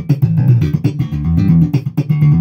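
Ibanez TMB100 electric bass played through an amplifier in a fast run of plucked notes, with its active preamp's treble and bass turned all the way up.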